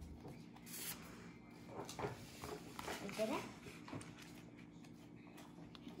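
Soft rustles and light taps of playing cards being handled and drawn from a hand at a wooden table, in short scattered bursts.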